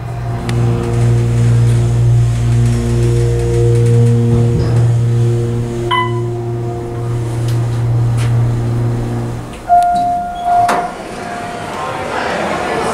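OTIS Series 1 hydraulic elevator's pump motor running with a steady low hum while the car rises one floor, cutting off near the end as the car stops. A short high tone sounds about halfway through, and a louder steady tone lasting about a second just after the motor stops.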